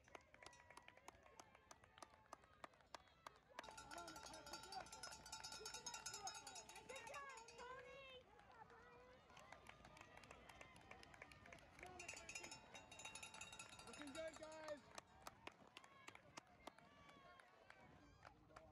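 Faint footfalls of many cross-country runners' shoes on a hard dirt path as the pack passes. Spectators shout and cheer unintelligibly, about four seconds in and again around twelve seconds.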